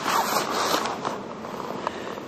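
Handling noise on the camera: rough rubbing and scraping close to the microphone, loudest in the first second, with a single sharp click near the end.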